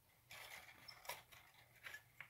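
Near silence with faint rustling and a few light clicks from fingers handling thin wire tangled around the string trimmer's motor shaft.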